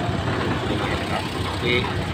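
Steady low rumble of an engine running at idle, with a man's voice coming in briefly near the end.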